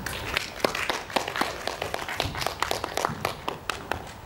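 Scattered applause from a small audience, the individual claps distinct and irregular. It stops near the end.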